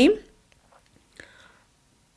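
A lipstick tube being opened: a faint short click about a second in as the cap comes off, after the last of a woman's word fades.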